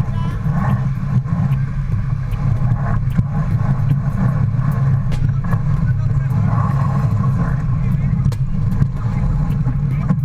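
Wind buffeting a deck-mounted camera's microphone aboard a yacht under sail, a steady low rumble with the rush of water alongside. Crew voices come through faintly now and then, and there are occasional sharp clicks.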